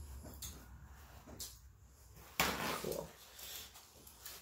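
Handling noises from eating a seafood boil at the table: a few light clicks, then a louder crackling rustle about two and a half seconds in, as crab shells and paper napkins are worked.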